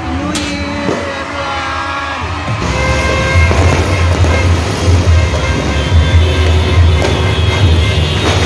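New Year's Eve street din: loud music with a heavy bass pulse and held horn-like tones, then a dense, louder clamour from about two and a half seconds in as aerial fireworks burst overhead with occasional sharp cracks.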